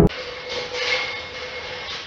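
Music cuts off abruptly at the very start, leaving steady background hiss with a faint continuous hum: the room tone of the voice recording.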